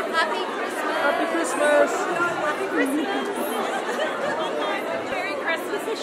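A crowd of people talking at once: a steady babble of many overlapping voices in a large theatre auditorium.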